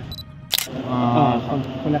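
Camera sound effect: a short high electronic focus beep, then a sharp shutter click about half a second in.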